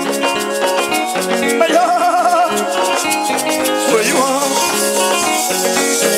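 Live band music: a shaker keeps a fast, steady rhythm under plucked guitar lines, with a wavering held note about two seconds in.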